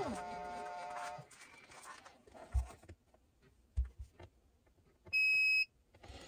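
A buzzing tone drops in pitch and fades within the first second. A few soft knocks follow. Near the end a single short electronic beep sounds, steady and high, the loudest sound here.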